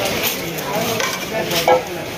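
Steady crackling fish-market noise with faint voices in the background, and one short knock near the end as a large cutting blade is brought to the fish on the wooden block.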